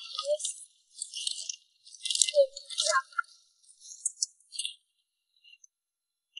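Shellfish and small fish rattling and scraping in a plastic basin as a gloved hand sorts through the catch, in several short bursts over the first five seconds.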